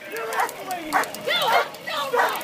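Dogs barking and yipping over raised voices. These are the barking dogs that officers brought up against a crowd of protesters.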